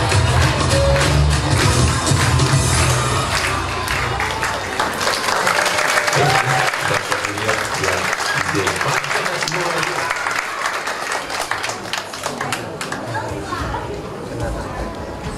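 Backing-track music with a heavy bass beat that fades out about four to five seconds in, then audience applause with voices that slowly dies down.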